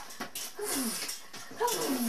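A dog giving two short, falling whines, one a little before the middle and a longer one near the end.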